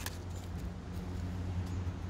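Steady low background rumble with no clear events in it.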